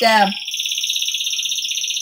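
A pet bird singing one long, fast trill that holds a steady pitch. A person's voice is heard briefly at the start.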